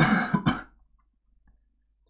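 A person coughing to clear the throat: two quick, loud bursts within the first second.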